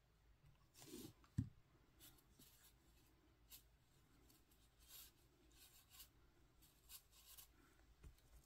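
Near silence with faint rustling of fingers handling yarn wrapped around a wire stem, and one small click about a second and a half in.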